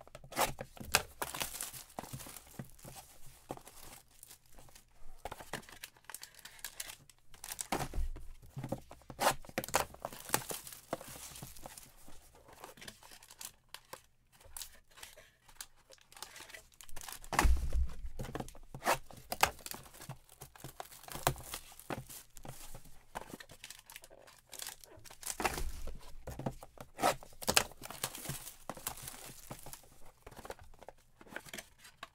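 Cardboard trading-card hobby boxes being torn open and foil-wrapped card packs pulled out and handled, a string of crinkling, tearing and scraping sounds. A few dull thumps come as boxes or packs are set down, the loudest a little past halfway.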